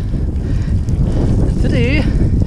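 Wind buffeting a bike-mounted camera's microphone while cycling at speed, a loud steady rumble, with a short vocal sound from the rider near the end.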